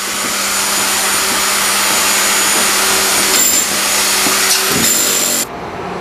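A power tool running steadily on the building works, then cutting off suddenly about five and a half seconds in.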